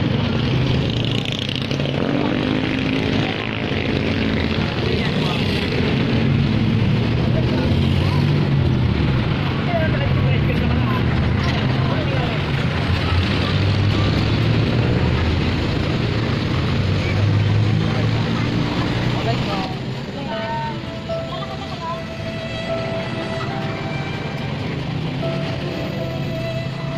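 Voices talking over a steady low rumble of street and vehicle noise. About twenty seconds in, background music with held notes comes in.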